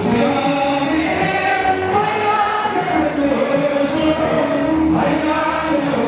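Slow Ethiopian Orthodox hymn (mezmur) sung by a man into a microphone, with long held, slowly bending notes.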